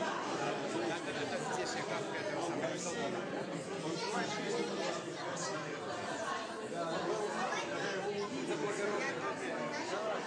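Crowd chatter: many overlapping conversations at once in a room full of people, steady throughout, with no single voice standing out.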